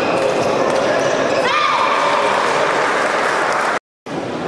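Indoor badminton rally: racket hits on the shuttlecock, players' shoes squeaking on the court floor and voices in a large echoing hall. The sound cuts off abruptly just before the end.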